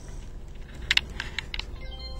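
Sharp plastic clicks and taps from a Leica handheld survey controller being handled: about five clicks over a second, the first two close together and loudest.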